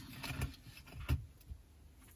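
A few faint clicks of small metal spacer beads against a plastic bead tray and a beading needle as the beads are picked up onto the needle.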